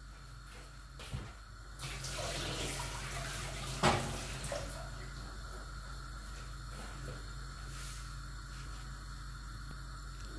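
Water running and splashing for about two seconds, ending in a sharp clink, then a steady low hum.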